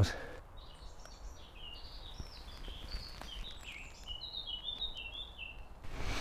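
Woodland songbird singing: a quick, busy run of short, high chirping notes over a faint low rumble of outdoor background noise.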